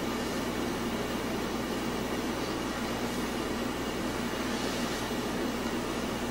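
Steady room tone of the meeting room: a low hum under an even hiss that does not change.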